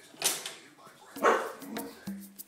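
Dog barking twice, two short sharp barks about a second apart, with a fainter one near the end.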